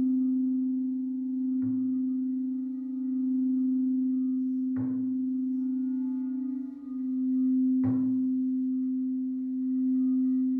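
Singing bowl struck three times, about three seconds apart, each strike feeding one steady low ringing tone that carries on between strikes.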